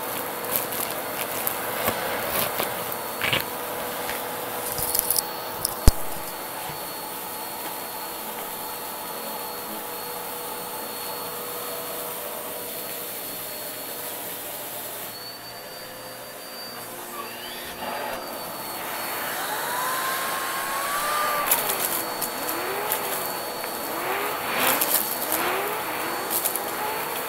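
Vacuum cleaner running with a steady motor whine as its hose end sucks debris off a carpet. Small bits crackle and click up the hose in the first few seconds, with a sharp crack about six seconds in. Whistling tones slide up and down over the last several seconds as the nozzle moves, with more crunchy clicks near the end.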